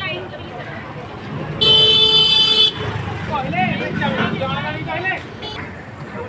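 A vehicle horn gives one steady toot lasting about a second, the loudest sound here, then a brief second toot near the end. Street voices continue around it.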